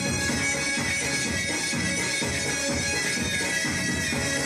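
Folk dance music: a reedy wind-instrument melody over a steady drone, with a regular drum beat about twice a second.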